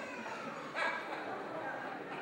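Hushed voices speaking, with a brief high, whining sound near the start.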